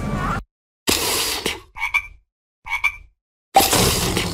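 Cartoon frog sound effect: two short croaks about a second apart, after a brief burst of noise. Another loud, noisy sound starts near the end.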